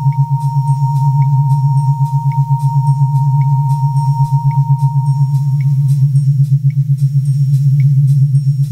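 Electronic synthesizer music: a loud, rapidly throbbing low synth bass drone under a steady sine-like high tone that fades out about six seconds in. Short high blips sound about once a second over faint ticking.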